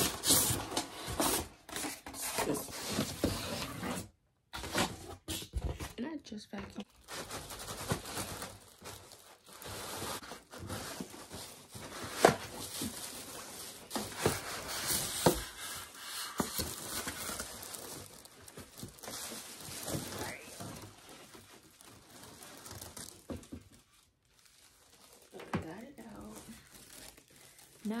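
Thin plastic protective bag crinkling and rustling in irregular bursts as it is handled and pulled around a new flat-screen TV, with one sharp louder crackle about twelve seconds in.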